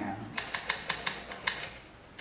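Typewriter keys struck in a quick, uneven run of about nine clacks, starting just under half a second in and stopping near the end.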